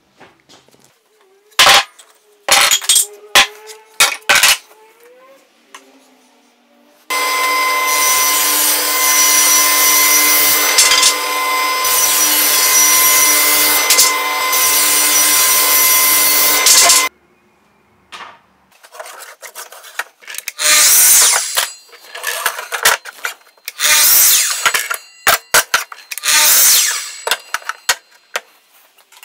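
Table saw running and cutting a board for about ten seconds, a steady loud run with a whining tone that cuts off suddenly. Before it come a few sharp knocks of wood being handled, and after it several shorter bursts of tool noise.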